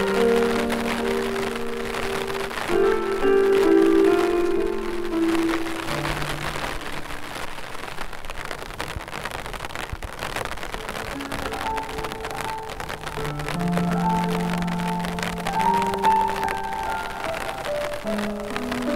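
Piano music playing over steady rainfall. The piano drops out for several seconds in the middle, leaving mostly the rain, then comes back in.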